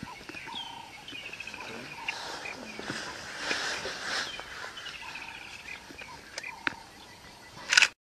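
A bird singing the same phrase over and over, about every two and a half seconds: a short low whistle followed by a quick run of notes falling in pitch. A loud brief noise comes near the end.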